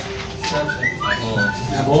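Whistling: a few short notes gliding up and down, heard over faint background voices.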